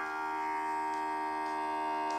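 Tinton Life vacuum sealer running, a steady electric hum with an even buzzing tone.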